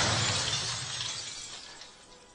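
A noisy, crash-like wash with no clear pitch, fading away steadily over two seconds as the music ends.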